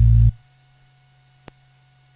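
Teenage Engineering PO-33 K.O! sampler playing a short, loud, deep bass-heavy sample for about half a second at the start, followed by a single faint button click about a second and a half in. A faint low electrical hum runs underneath.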